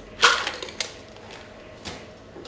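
Ice clattering inside a metal cocktail shaker as the last of a shaken drink is strained out, with one sharp, loud clatter a quarter second in and a couple of lighter knocks after it. Another knock near the end as the shaker is put down.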